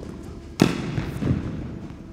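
Tennis racquet striking the ball on an indoor court: one loud, sharp hit a little past half a second in, then a softer knock under a second later, both echoing in the hall.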